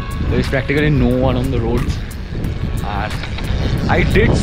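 Wind buffeting the microphone of a handheld camera while riding a bicycle, a steady low rumble, with a man's voice sounding over it early on and again about three seconds in.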